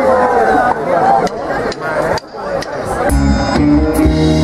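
Rock band on electric guitars, bass and drums starting a song: a few sharp clicks, then the whole band comes in together about three seconds in.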